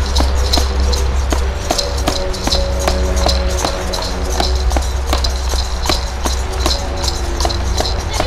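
Drums beating a steady rhythm of about three strikes a second, over held melody notes that change pitch every second or so.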